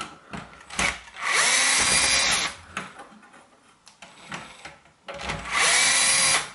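Cordless drill-driver running in short bursts, mainly twice: once about a second in and again near the end. It is backing out the screws that hold an electric shower's pressure relief device, with small clicks and handling knocks between the bursts.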